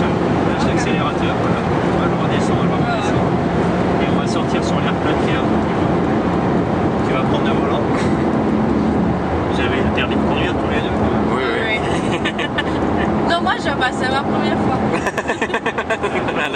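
Ferrari FF's V12 engine running under way at track speed, heard from inside the cabin together with road noise, a steady low drone that wavers only slightly. A person's voice breaks in near the end.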